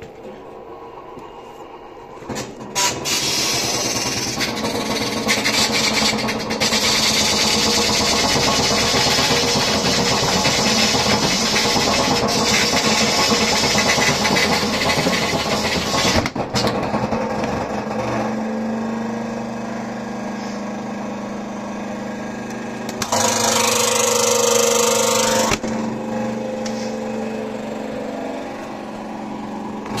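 LG WD-10600SDS washing machine's direct-drive motor spinning the drum in service mode, starting loudly about two and a half seconds in and running steadily. A hum comes in over the second half, and there is a louder burst of noise for a couple of seconds later on.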